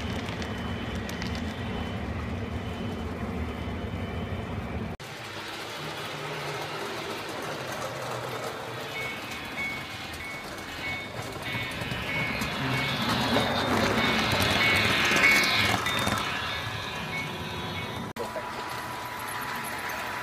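HO scale freight cars rolling along model track with a low rumble until an abrupt cut about five seconds in. Then a model diesel locomotive's onboard sound grows louder as it approaches, with a repeating high tone, and is loudest a little past the middle.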